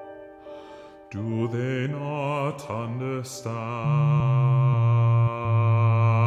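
Contemporary classical vocal music: a voice holds wavering notes with vibrato over a low, steady held tone. It comes in about a second in, after a quiet moment, and swells louder toward the end.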